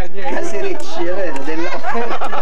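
Several people talking at once around a table, with overlapping voices and laughter-free chatter at a steady level.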